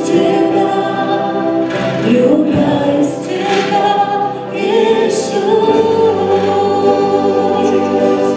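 Worship song sung by several voices into microphones, with live band accompaniment.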